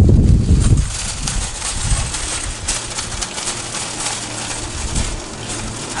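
Wind buffeting the microphone in a heavy low rumble for about the first second, then a wire shopping cart rattling with scattered clicks as it is pushed across asphalt, over a faint steady low hum.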